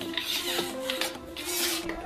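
Two short rasping slides, about half a second each, as the sections of a 2.7 m telescopic selfie stick are pulled out. Background music with sustained notes plays under them.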